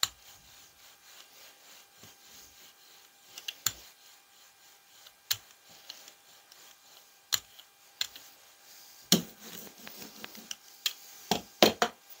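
Rubber brayer rolling over tacky acrylic paint on a gel printing plate, a faint crackly rubbing, broken by sharp clicks and knocks every second or two, with several close together near the end.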